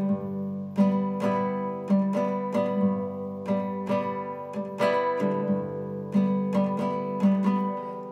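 Acoustic guitar strumming chords in an instrumental passage of a song, with no singing, about two strums a second.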